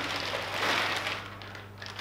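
Packaging rustling and crinkling as a travel makeup case is pulled out of a parcel, fading away in the second half with a few light ticks.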